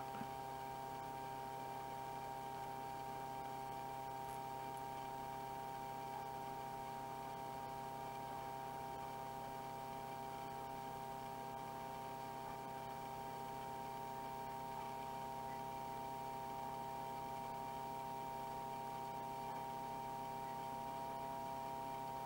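A steady electrical hum made of several fixed tones, unchanging throughout, over faint hiss.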